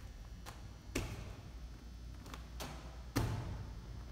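Soft medicine ball (wall ball) thudding against a cinder-block wall and slapping back into the hands on the catch, over two reps. The loudest thuds come about a second in and again just after three seconds, with lighter knocks between them.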